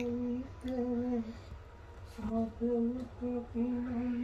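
A voice humming a slow tune in a run of steady, held notes, broken by a short pause about a second and a half in.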